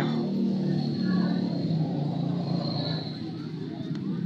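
Motor scooter engines running at low speed close by, a steady low hum that eases a little after about three seconds, with scattered voices of a street crowd.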